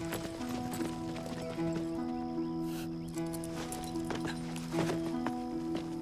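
Horses' hooves clip-clopping irregularly at a walk on a dirt road, several horses at once, under background music of long held chords.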